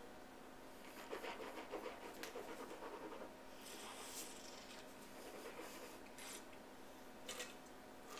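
A mouthful of red wine being swished around in the mouth, faint and wet, followed about halfway through by a breathy hiss of air through the lips as it is tasted.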